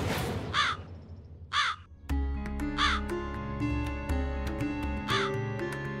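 A crow cawing four times, short single caws spread across a few seconds. Background music with held notes comes in about two seconds in, after a sudden swish at the start.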